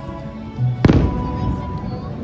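A firework shell bursting once with a sharp boom about a second in, over steady music.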